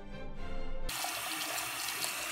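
Music cut off abruptly about a second in, replaced by a bathroom sink's tap running steadily into the basin.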